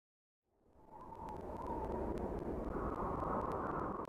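Logo-intro sound effect: a rushing noise that fades in from silence about half a second in and then holds steady, with a faint wavering tone and scattered light clicks.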